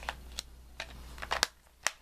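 Handling of a plastic DVD case and picture cards: about half a dozen light clicks and taps, the sharpest two a little past the middle.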